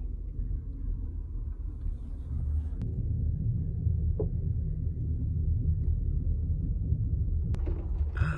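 Steady low rumble of a moving passenger train heard from inside the car, with a sharp click about three seconds in and another near the end.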